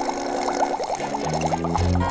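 Cartoon sound effect of a child sucking milk through a drinking straw: a quick run of short gulping sips, about eight a second, that fades out near the end. Soft background music with held notes plays underneath.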